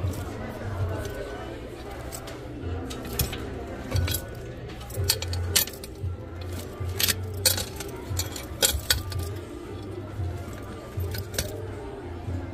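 Metal clips, key rings and zipper hardware of small leather Coach mini-backpack bag charms clinking and jangling as they are picked up and handled in a display tray, a string of sharp clinks through most of the stretch, over store background music and voices.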